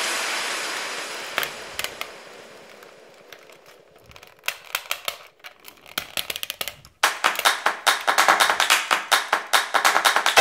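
Hard plastic toy-robot parts clicking and snapping as the joints and panels are moved, first a few scattered clicks and then, about seven seconds in, a fast, even run of clicks. A tail of sound fades out over the first three seconds.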